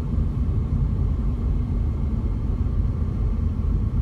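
Steady low rumble of road and engine noise heard inside a car's cabin while it drives along a highway.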